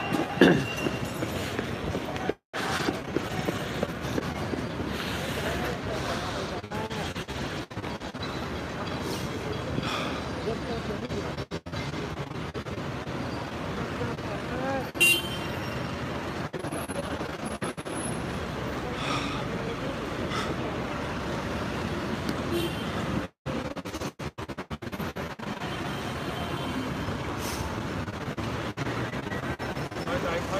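Street crowd noise from gathered protesters: many overlapping voices with vehicle traffic underneath, and one brief louder sound about halfway through. The sound cuts out briefly twice.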